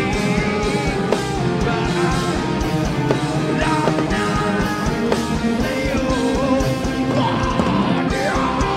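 Nu-metal band playing live, loud and steady: a vocalist singing into a microphone over electric guitars and a drumbeat.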